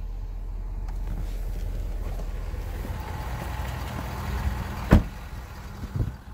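Steady low hum inside the cab of a 2018 Ford F-350, then the truck's door shutting with one sharp slam about five seconds in, after which the background is quieter.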